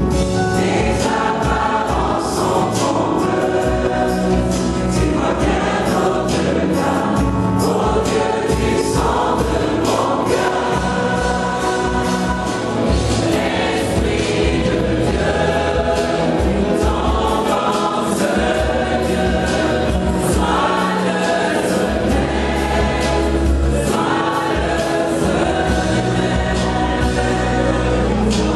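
Gospel choir singing with instrumental accompaniment, a steady low bass line and regular beats underneath the voices.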